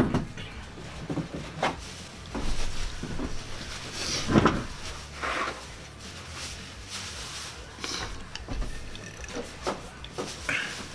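Scattered knocks, clicks and rustles of a person getting up from a wooden chair, fetching a paper towel and sitting back down to wipe his sweaty face. The loudest noise comes about four and a half seconds in.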